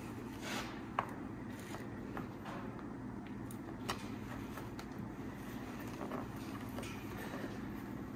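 Faint clicks and scrapes of a screwdriver and fingers working a cap into place on a snowmobile's chain case, with one sharper click about a second in and another near four seconds. A low steady hum underneath.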